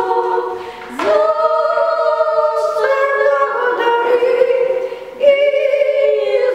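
Two elderly women singing a Ukrainian song unaccompanied, together, in long held notes. They pause briefly for breath just before a second in and again about five seconds in, then start a new phrase.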